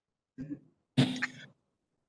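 A person clearing their throat over the meeting audio: a short faint sound about half a second in, then a louder one about a second in.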